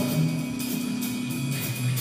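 Live band playing soft background music: a held keyboard chord with bass notes moving underneath.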